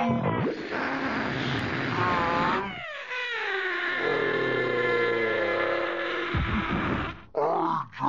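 Cartoon sound effect of a giant inflated balloon deflating through its opened valve: a loud rush of escaping air, then a long squealing tone falling slightly in pitch as the emptying skin flies about.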